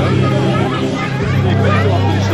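Chatter of a walking crowd of adults and small children, many voices overlapping, over a steady low hum.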